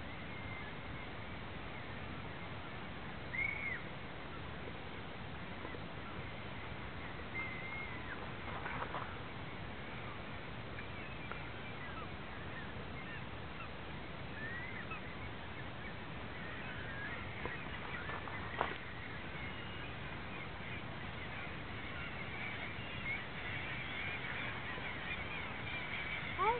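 Gulls calling now and then over a steady hiss, the calls coming thicker near the end. A single sharp knock about two-thirds through.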